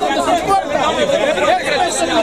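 A crowd of men talking over one another at once, several voices overlapping with no pause.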